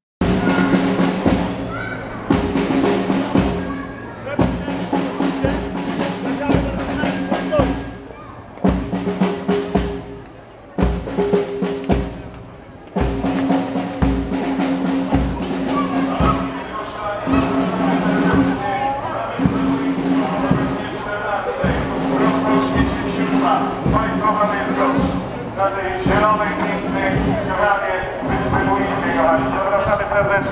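A parade band playing: drums beating in a steady rhythm under long held low brass notes that stop and start. Crowd voices rise over the music in the second half.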